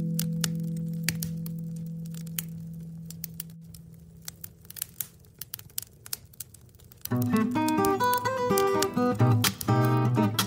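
Solo acoustic guitar: a held chord rings and slowly fades out over about seven seconds, leaving the sharp crackles and pops of a wood stove fire. Then, about seven seconds in, the guitar starts playing again at full level.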